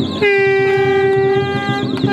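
A horn sounding one long, steady blast that starts just after the beginning and breaks off near the end, over music with a beat.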